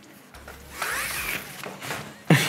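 Telescoping metal studio stand being raised by hand: a rubbing, scraping slide of the tube sections lasting about a second, with faint squeaky glides.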